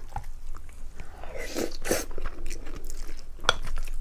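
Wooden spoon stirring and scooping through wet, saucy food in a glass bowl, close to a clip-on microphone: soft squelches and scrapes with scattered small clicks, one sharper click about three and a half seconds in.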